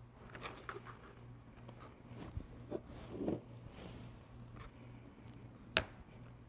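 Kitchen knife cutting soft biscuit dough into small cubes on a plastic cutting board: scattered taps of the blade on the board, the sharpest shortly before the end, over a faint steady low hum.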